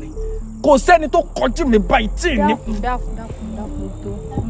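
A voice speaking emphatically for about two seconds, starting about half a second in, over steady high-pitched cricket chirring and soft background music.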